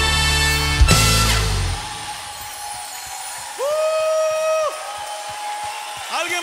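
A live worship band finishing a song: full band sound closes on a final sharp hit a little under a second in, and the low end rings out and dies away within another second. A quieter stretch follows, with one held note of about a second near the middle.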